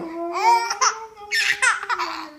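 A 4½-month-old baby laughing in several high-pitched bursts while being tickled.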